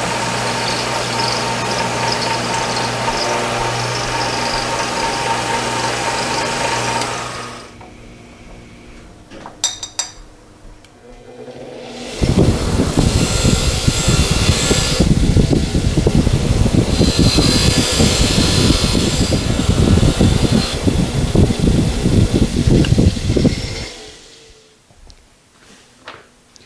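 A milling machine running with its end mill in the cut through steel, a steady hum with a high whine, stops after about seven seconds. About twelve seconds in, a bench grinder grinds the bevelled end of a square high-speed-steel tool bit: a loud, rough grinding for about twelve seconds that then stops.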